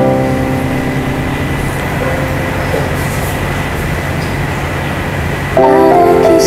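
Digital keyboard playing sustained, organ-like chords. A held chord dies away over the first second, leaving a steady background haze and a faint lingering note. A new chord is struck loudly about five and a half seconds in.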